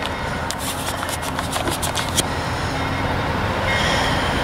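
Amtrak passenger train moving along the track next to the platform, a steady low rumble with a run of light sharp clicks between about half a second and two seconds in.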